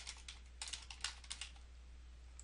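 Faint computer keyboard typing: a quick run of keystrokes over the first second and a half, then it stops.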